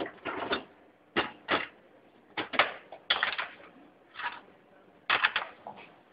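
A frying pan and utensils clattering on a portable gas stove's metal grate: a string of sharp knocks and rattles in irregular clusters.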